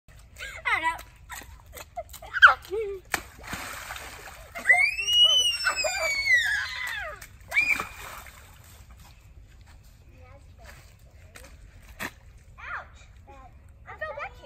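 Children squealing and calling out while wading and splashing through a muddy puddle, with one long high call that rises and falls in the middle and a few sharp knocks.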